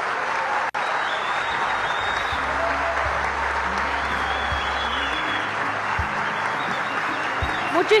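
Audience applause, steady throughout, with faint voices mixed in. The sound cuts out for an instant just under a second in.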